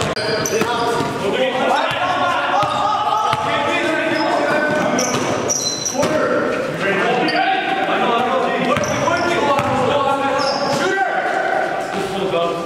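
Live basketball game sound in a large gym: the ball bouncing on the wooden court, short high sneaker squeaks, and players' voices calling out in the hall.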